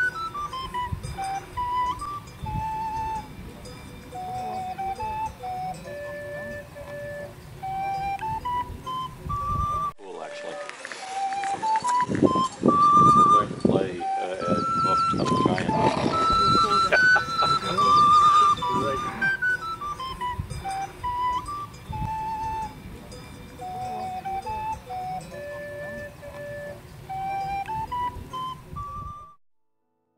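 Recorder playing a slow, simple melody of single held notes, the same tune going round about three times, with a stretch of rough noise underneath in the middle. The playing stops shortly before the end.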